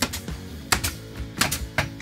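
A nail gun fastening cedar wainscoting boards, firing several sharp clacks, some in quick pairs, over background music.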